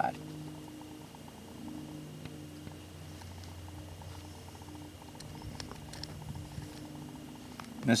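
Faint rustling and a few small clicks as waxed linen thread is drawn through a canvas strap and pad with a hand sewing awl, over a low steady hum.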